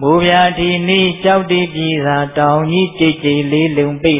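A monk's voice intoning a recitation in a chanting tone, holding fairly level pitches in short phrases. It sets in suddenly after a brief pause.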